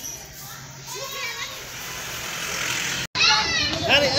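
Children's voices and chatter, faint and distant at first; after an abrupt cut about three seconds in, a child's high voice close by and louder.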